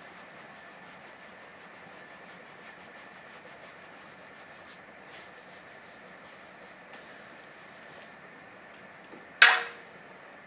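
Soapy hands pressing and gently rubbing wet wool fiber under wet bubble wrap, heard as a faint steady hiss with a few soft ticks. Near the end comes a single sharp clink that dies away quickly.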